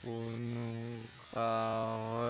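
A man's low voice humming in held notes of about half a second to a second, broken by short pauses, on a nearly steady pitch.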